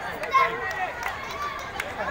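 Boys' voices calling and shouting during a kabaddi raid, with running feet and scuffling on a hard dirt court.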